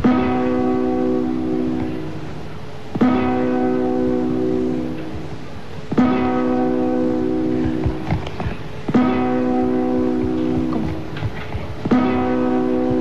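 Single strummed guitar chords, one every three seconds, each struck sharply and left to ring for about two seconds: the guitar strums that stand in for the twelve New Year's midnight chimes (campanadas) on Andalusian radio, counting down the strokes of midnight.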